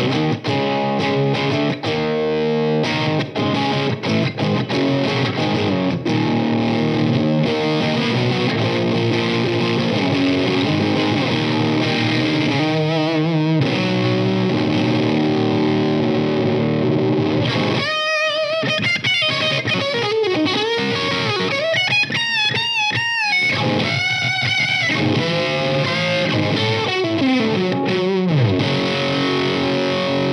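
Electric guitar played through the Orange Guitar Butler two-channel JFET preamp pedal with its gain turned well up: a thick, overdriven 70s-style rock tone with continuous riffing. In the second half the lead lines carry wide vibrato and swooping pitch bends.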